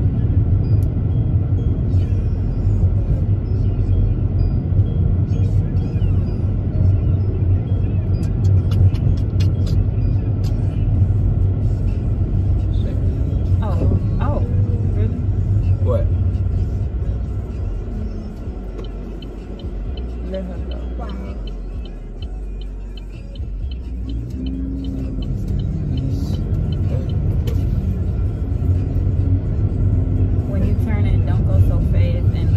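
Car cabin rumble from the moving car: steady road and engine noise heard from inside. It eases off for a few seconds past the middle, then builds again.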